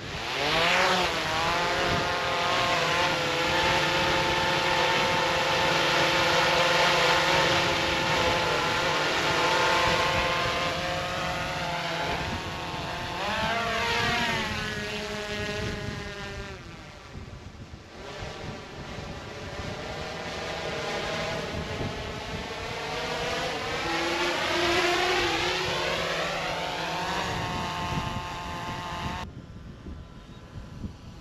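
DJI Mavic 3T quadcopter's four motors and propellers spinning up with a quick rising whine at takeoff, then a loud steady multi-toned buzzing hum while it hovers low. About halfway through the pitch shifts and the sound dips and swells with a sweeping, phasing quality as the drone climbs away, cutting off abruptly near the end.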